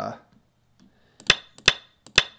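Go stones being placed on an online Go client's board: two sharp, clacking stone-placement sound effects about 0.4 s apart in the second half, each with a brief high ring.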